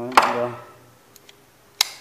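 Spinning reel's bail arm being flipped by hand and snapping over, with two sharp clicks about a second and a half apart and faint ticks between. The bail now trips and springs back normally, the sign that its repaired trip mechanism works.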